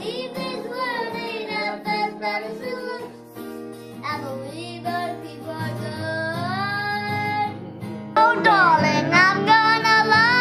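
A young girl singing a country song to a strummed acoustic guitar, with a long held note that glides upward near the middle. About eight seconds in, the sound turns suddenly louder as another song begins, again her voice with acoustic guitar.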